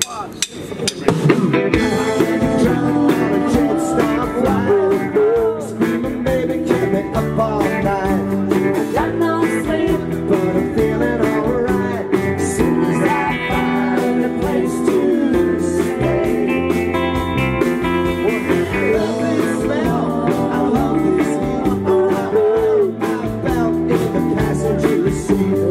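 Live band starting a song about a second and a half in: acoustic and electric guitars strumming over drums, then playing on steadily.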